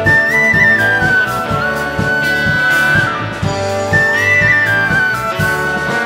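Live folk-ensemble music: a high, clear wooden-flute melody stepping between a few held notes, over violin and a steady beat.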